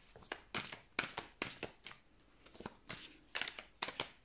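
A deck of oracle cards being shuffled by hand: a quick run of short, papery slaps and flicks, a few each second, with a short pause about halfway.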